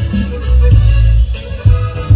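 A live Mexican regional band playing an instrumental passage between sung lines, with a heavy bass line and a steady drum beat.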